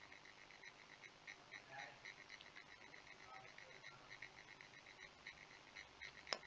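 Near silence: faint room tone with a soft, regular chirping about four times a second.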